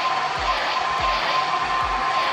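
Hand-held hair dryer blowing steadily with a high whine, held at the hairline to dry lace-wig glue until it turns tacky. Background music with a steady low beat runs underneath.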